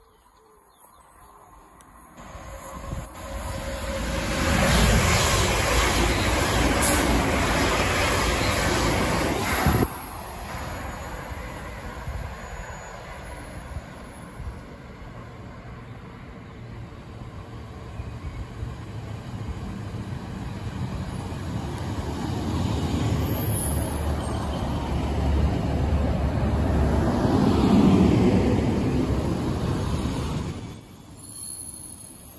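A train passes at speed, loud for several seconds, then cuts off abruptly. A Northern two-car diesel multiple unit then approaches and pulls into the platform, its engine rumble and wheel noise on the rails growing louder toward the end.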